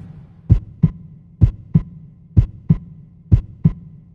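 Heartbeat sound effect: four double thumps, evenly spaced about a second apart, over a faint low hum.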